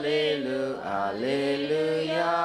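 A priest's solo chant of a liturgical text, sung on long held notes that step up and down in pitch, with brief breaks between phrases.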